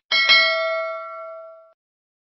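Bell-like notification chime sound effect, struck twice in quick succession and ringing out for about a second and a half, as the subscribe animation's cursor clicks the bell icon.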